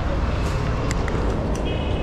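Steady low rumble of road traffic around a station concourse, with a few light clicks and a faint high tone that starts near the end.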